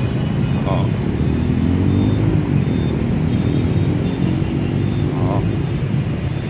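City street traffic: a steady low rumble of passing vehicles, with an engine hum rising and falling in the middle seconds.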